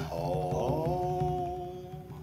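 The last held sung note of a song: a voice sustaining one long note over a low backing beat, fading out toward the end.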